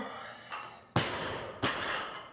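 Barbell loaded with bumper plates coming down from overhead onto a wooden lifting platform: two sharp impacts about 0.7 s apart, each followed by a short rattle.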